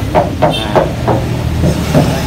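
Hand knocking several times on the steel body of a Toyota Kijang pickup's tailgate, a series of short dull knocks on sheet metal, over a steady low hum.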